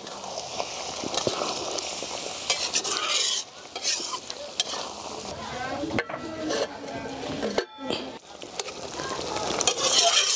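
Thick spinach-and-potato gravy bubbling and sizzling in an iron kadhai, with a steel spatula scraping and clicking against the pan as it is stirred. A short gap breaks the sound about three quarters of the way through.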